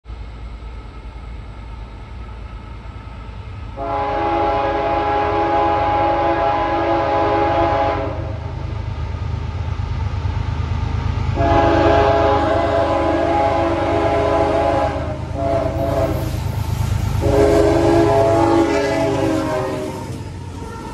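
Approaching CSX diesel freight locomotive, a GE ES44AH, sounding its multi-chime air horn in two long blasts, a short one and a final long one: the long-long-short-long signal for a grade crossing. Under the horn, the locomotive's diesel engine rumbles steadily and grows louder as it draws close near the end.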